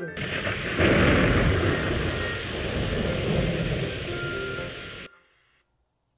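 Thunderstorm sound effect: a steady rush of rain with rumbling thunder, swelling about a second in and cutting off abruptly about five seconds in.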